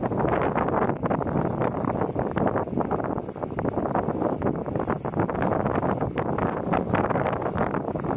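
Wind buffeting the microphone: an irregular, gusty rush of noise with no clear engine note standing out.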